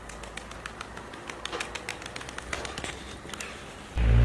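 Van high-flyer pigeons' wings flapping as two birds are released and take off, a quick, irregular run of sharp wing claps.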